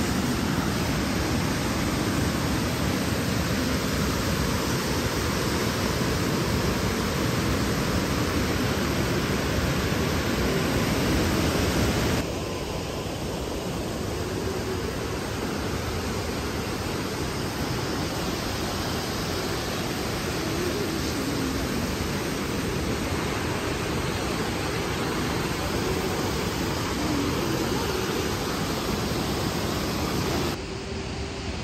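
Swollen, fast-flowing river rushing over rocks, a steady rush of water. About twelve seconds in it changes abruptly to a slightly quieter, duller rush.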